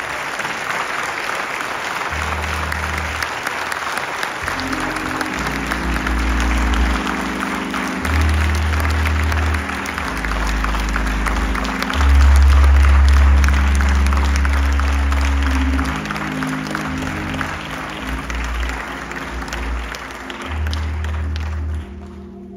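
Congregation applauding, with music of sustained low bass notes and chords joining about two seconds in and changing every second or two; both stop abruptly near the end.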